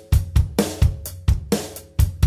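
Live rock band playing between sung lines: a drum kit keeps a steady beat of hi-hat, snare and bass drum, about four strikes a second, over guitar and bass guitar.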